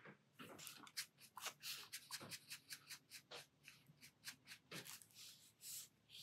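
Very faint, irregular scratches and light taps of a brush pen's tip dabbing colour onto sketchbook paper, a few strokes a second.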